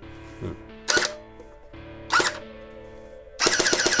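WELL D-90F electric airsoft gun firing: two short sharp bursts about a second apart, then a longer rapid-fire burst starting near the end. Fairly quiet for an electric gun, about 100 dB on a sound meter.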